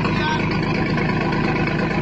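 A fishing boat's engine running steadily, with an even pulsing throb and voices over it.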